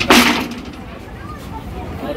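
A steel gate on a boat's deck clanging shut, one loud metallic bang with a brief ringing tail at the very start, followed by a steady low rumble.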